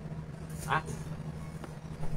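Steady low background hum, with one short click late on.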